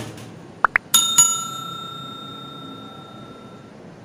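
Subscribe-button overlay sound effect: two quick rising chirps about half a second in, then a bell struck twice about a second in, its ring fading out over about two and a half seconds.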